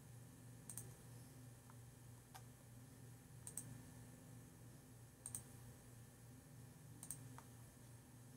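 Near silence over a low steady hum, broken by four faint, sharp double clicks about two seconds apart and a few softer ticks.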